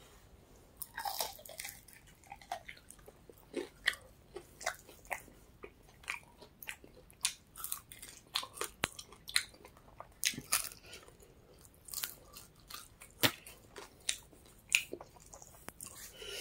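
A person chewing and biting into chicken wings close to the microphone: many short, irregular crunches and mouth sounds.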